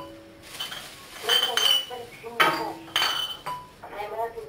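Hard objects being handled at a table, clinking together: several sharp clinks, each with a brief ringing.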